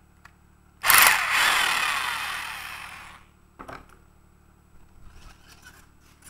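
Handheld power driver unscrewing a 10 mm tie rod from a battery module end plate. A loud run of about two seconds starts suddenly and fades as it goes, its pitch falling, followed by a couple of short clicks.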